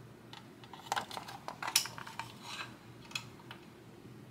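Light clicks and small rattles of an Axial SCX24 micro RC crawler's plastic body and chassis parts as it is handled and turned over in the hands, most of them between one and three seconds in.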